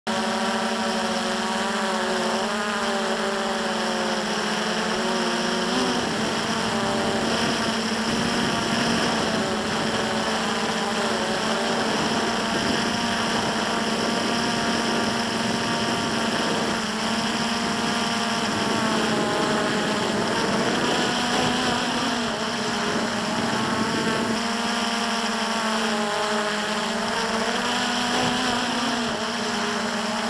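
Hubsan X4 Pro H109S quadcopter's motors and propellers whining steadily, the pitch wavering as the motor speeds shift. Through the middle the sound turns rougher, with more rushing noise under the whine.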